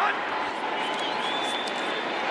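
Steady stadium crowd noise from a large football crowd, with a faint high thin tone about halfway through.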